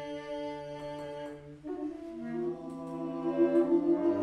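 Free-improvised ensemble music of long held wind-instrument notes: one low note is sustained for about a second and a half, then new pitches come in, one of them wavering, and the sound grows louder toward the end.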